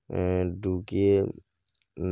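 A man speaking, then a pause with a couple of brief, sharp clicks near the end.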